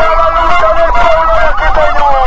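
A siren with a fast, rapid warble, overlapped by other long siren or horn tones that slide slowly down in pitch.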